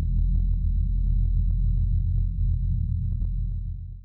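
Closing sound sting: a loud, deep electronic drone with many scattered sharp clicks over it and a faint steady high whine, fading out at the very end.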